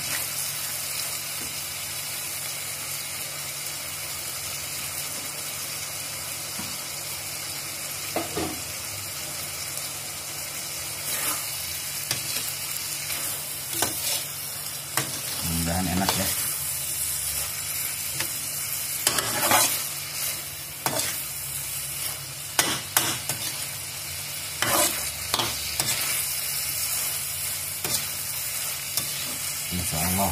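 Shrimp and onions sizzling in an enamelled wok, with the spatula scraping and knocking against the pan as they are stirred. The scrapes come in scattered clusters from about ten seconds in.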